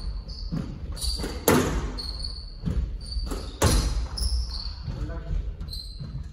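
Squash rally: the ball smacks off rackets and the walls in a quick run of sharp hits about every half second, with shoes squeaking on the wooden court floor between shots.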